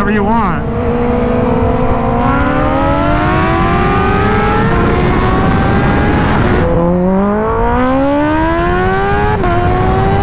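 Kawasaki Ninja H2's supercharged inline-four accelerating hard through the gears. Its pitch climbs steadily and drops at each upshift, about halfway, about two-thirds in and near the end, over a steady rush of wind.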